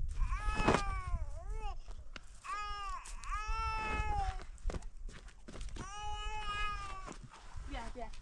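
Repeated high-pitched, drawn-out cries, about five in all, each rising and falling in pitch, from a young animal or an infant.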